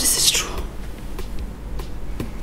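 A brief breathy, whispered "this is" at the start, then a pause with a steady low hum underneath.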